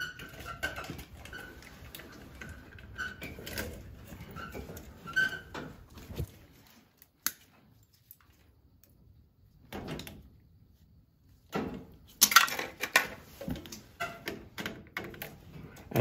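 Small clicks, taps and scrapes of gloved hands and a screwdriver working wires into the screw terminals of a boiler zone switching relay. The sounds come in scattered bursts, with a quiet stretch in the middle.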